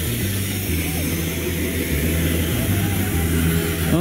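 Truck engine running steadily at idle, a low steady rumble.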